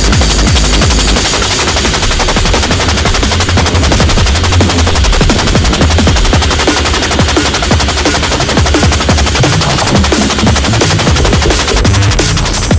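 Loud electronic dance music with a heavy bass line and a dense stream of very rapid, machine-gun-like drum hits.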